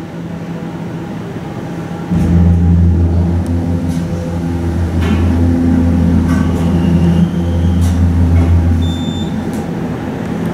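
Hydraulic elevator's pump motor running as the car rises: a deep, steady hum that starts about two seconds in and cuts off about nine seconds in, as the car reaches the landing.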